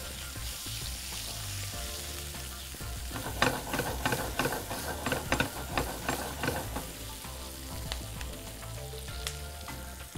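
Chopped onions and whole dry red chillies sizzling in hot ghee in a wok, with a spatula stirring and scraping through them. The stirring strokes are loudest and busiest between about three and seven seconds in.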